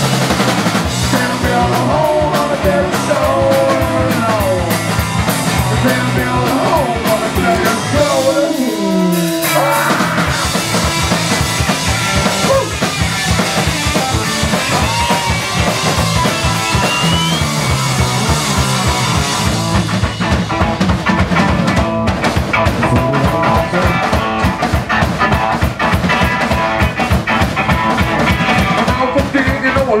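Live garage punk band playing: electric guitar, bass and drum kit with a steady driving beat. The bass and drums drop out briefly about eight seconds in, then the full band comes back.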